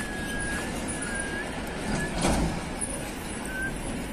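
Steady roadside traffic noise of vehicles on a highway, swelling briefly a little after two seconds in, with a faint thin high tone coming and going.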